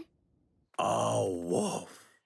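A cartoon character's voice giving one long groan, about a second long, that falls away near the end.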